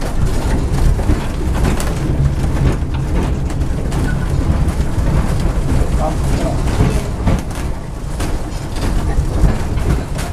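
Vintage tram running along its track: a steady low rumble with irregular knocks and rattles from the wheels and wooden body.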